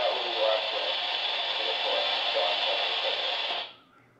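Baofeng UV-25 handheld receiving an AM airband voice transmission through its own small speaker: a narrow, hissy radio voice that cuts off shortly before the end.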